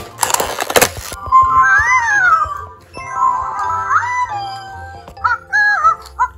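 A WowWee Fingerlings Lulu unicorn toy singing a high, sliding electronic tune through its small speaker. About the first second is rustling as the toy is handled.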